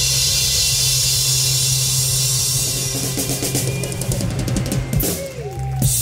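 Live band holding its closing chord: a sustained low bass note under ringing cymbals, with a fast drum-kit roll from about halfway that ends in two heavy hits near the end.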